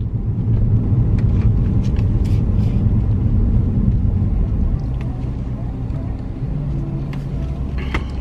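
Mercedes-Benz car driving slowly, heard from inside the cabin: a steady low rumble of engine and road noise, easing a little in the second half.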